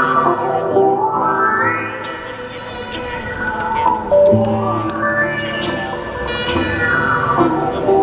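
Live-looped instrumental music: a fingerpicked steel-string acoustic guitar over a bass line, with a sweeping sound that rises and falls in pitch and repeats about every four seconds.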